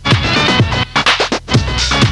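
Techno DJ mix: a driving electronic dance track with a pounding kick drum, chopped by two brief cut-outs, with a heavier bass line coming in near the end.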